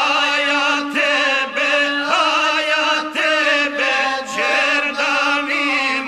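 Gusle, the single-string bowed folk instrument of South Slavic epic song, playing a wavering, ornamented, chant-like melody over a steadily held note.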